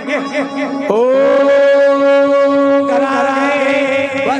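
A man chanting in Marathi devotional style, sliding up about a second in into a long held note of some two seconds before the line moves on again, over a steady drone.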